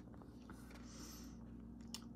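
Quiet room with a steady low hum; a soft paper rustle about a second in as a glossy catalogue is handled, and a single small click just before the end.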